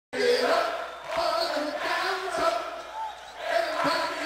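Several voices chanting and shouting in long held notes over a concert crowd, with a sharp knock about every second and a quarter.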